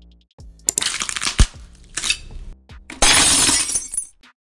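Animated logo sting: electronic music with glass-shattering sound effects. A loud crash with a deep hit comes about three-quarters of a second in, a shorter one near two seconds, and a loud noisy burst fills the last second.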